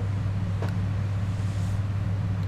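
A steady low background hum, with one faint click about two-thirds of a second in.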